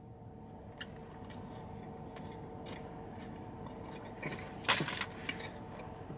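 A person chewing a mouthful of a chicken and coleslaw tortilla wrap, with quiet mouth sounds and a few faint clicks over a faint steady hum. There is a short, louder noise about five seconds in.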